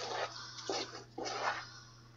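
A spoon stirring cooked macaroni in milk, butter and cheese powder in a metal saucepan: uneven wet squelching and scraping strokes.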